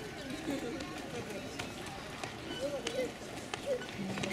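Background chatter of people's voices, indistinct and at a distance, with a few scattered sharp clicks.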